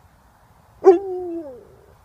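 Alaskan Malamute giving one short Chewbacca-like howl about a second in, holding its pitch and then sliding down at the end.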